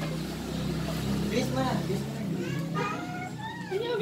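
A motor vehicle's engine running nearby as a low, steady hum that fades out about two and a half seconds in, under scattered voices.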